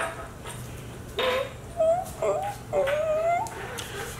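A few short, high-pitched whimpering vocal sounds whose pitch wavers up and down, starting about a second in.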